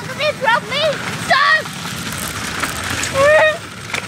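Shopping trolley rolling fast downhill on a paved path, its wheels and wire frame rattling in a steady rumble, with children's short, high-pitched yells over it in the first second and a half and again a little past three seconds.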